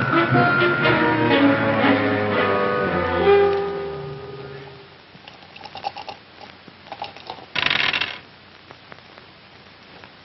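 Orchestral film score music that ends on a held note fading out about four seconds in, followed by a quiet stretch with a few faint knocks and a short burst of noise near the end.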